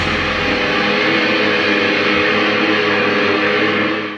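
Live band rehearsal: the band holds one sustained chord that rings on steadily over a fading cymbal wash, with no drum hits.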